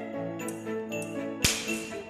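Orchestral accompaniment holding sustained chords between sung phrases, with one sharp crack about one and a half seconds in, its high ring dying away within half a second.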